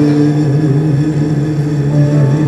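A man holding one long sung note with a slow vibrato, over sustained grand piano chords.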